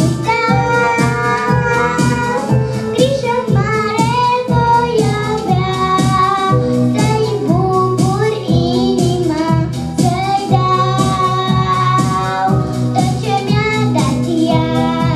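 A young girl singing solo into a microphone over instrumental accompaniment with a steady beat, holding long notes with vibrato.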